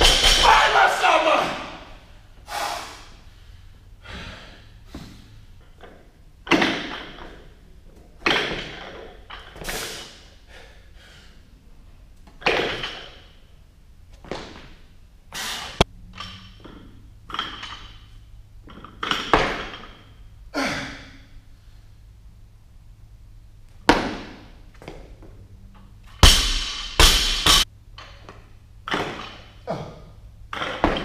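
Loaded barbell with bumper plates dropped to the gym floor, a loud crash and bounce at the start. It is followed by a dozen or so scattered thuds and clanks of weights, with a loud run of clanks near the end.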